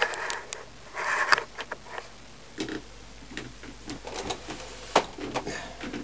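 Handling noise from a camera being set in position on a table: scattered light clicks, knocks and scrapes, with a sharp click about five seconds in.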